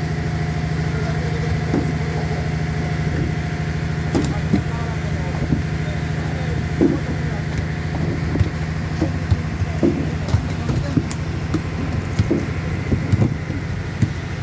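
Steady low drone of a running refrigerated truck, with voices in the background and scattered sharp knocks from about four seconds in.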